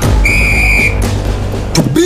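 A single whistle blast, one steady high note lasting under a second, over advert music with a heavy bass that starts abruptly.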